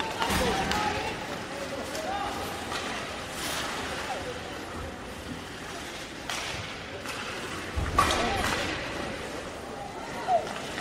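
Ice hockey arena crowd: spectators shouting and chattering over the rink's echoing noise, with sharp knocks from sticks, puck and boards, the loudest about eight seconds in.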